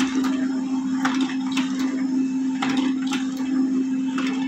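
Canon LBP215x laser printer running a print job: a steady hum with short clicks every second or so as sheets are fed through and ejected into the output tray.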